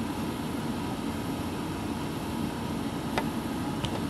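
Steady low background hum with two faint clicks near the end.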